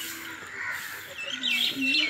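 Small birds chirping in short high calls, with a person's voice coming in about halfway through. The tyre's landing thuds fall just before and just after, not inside.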